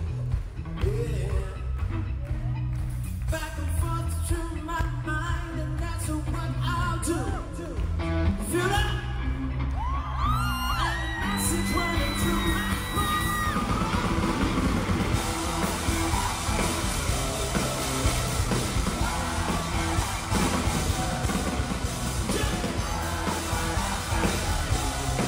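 Live pop band playing with singing: keyboards and a steady drum beat, with a long, high held vocal note that slides up into it about halfway through and yells from the audience.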